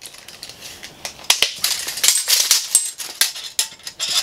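Irregular clicks and rattles of a steel tape measure being pulled out and laid along a freshly cut mountain-bike fork steerer tube, as the fork is handled.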